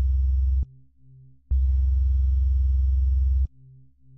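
Mobile phone vibrating in long buzzes of about two seconds with short pauses between them: one buzz stops just under a second in and the next runs from about a second and a half in to about three and a half seconds. A faint low pulsing hum carries on in the pauses.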